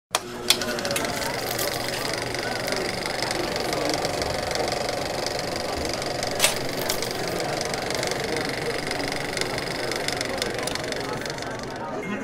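Film projector running: a steady, rapid mechanical clatter with hiss, and sharp clicks near the start and one about halfway through.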